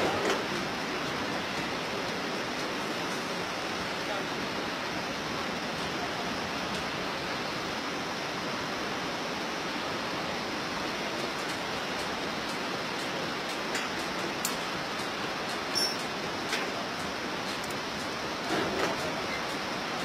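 Steady rush of the Bhote Koshi, a whitewater river, with a few faint clicks and a brief faint voice near the end.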